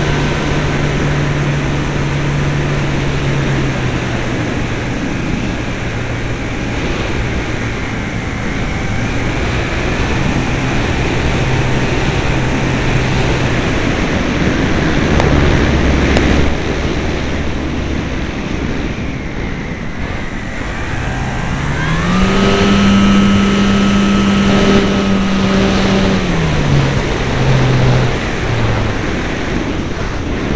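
Wind rushing over a wing-mounted camera on a Parkzone Radian electric glider in flight, with the hum of its brushless electric motor and propeller. The motor's low steady tone fades away midway, then rises sharply about two-thirds of the way through, holds for a few seconds and falls back.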